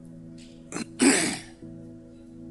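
A man clearing his throat about a second in, a short catch and then one louder rasp, close on a headset microphone, over soft sustained background music.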